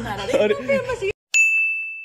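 A single bright ding sound effect: one clear ringing tone with a sharp start that fades over about three quarters of a second, set between two stretches of dead silence at a cut. Talking is heard just before it.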